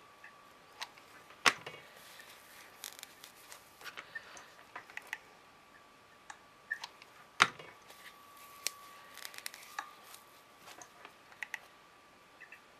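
Scattered small clicks and rustles of a hot glue gun and a foam-and-fabric hat brim being handled while fabric is glued down, with two sharper knocks, about a second and a half in and again about seven seconds in. A faint steady high tone runs underneath.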